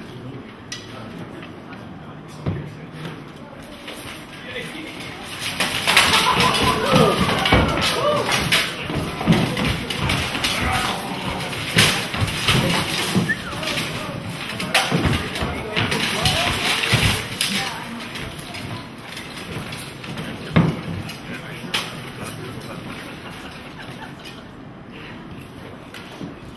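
Steel swords striking and plate and mail armour clanking as two armoured fighters exchange blows and grapple: a dense run of sharp metallic clanks and knocks through the middle, quieter at the start and end, with voices.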